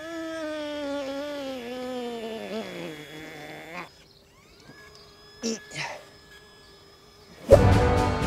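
A man's long, drawn-out stretching groan, wavering and sliding down in pitch over about four seconds. Music starts near the end.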